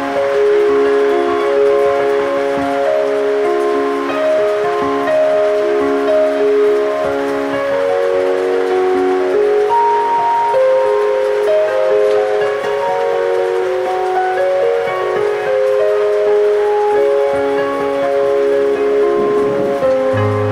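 Ambient keyboard music: sustained synthesizer notes and chords, each held for a second or so, shifting slowly in pitch.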